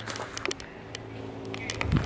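Faint footsteps and crackling of dry leaves on a leaf-covered dirt trail, a few light crackles mostly near the start, over a faint steady low hum.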